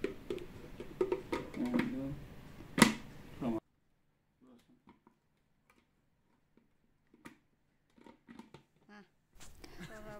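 Low talk and handling of plastic parts as a blender's chopper lid is fitted onto its bowl, with one sharp click about three seconds in. About half a second later the sound cuts off to near silence with only a few faint ticks, until it returns just before the end.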